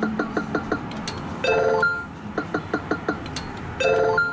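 Electronic sound effects from a Sigma Joker Panic! video poker machine as cards are dealt: a quick run of short blips, then a brief chime, repeating about every two and a half seconds over a steady background din.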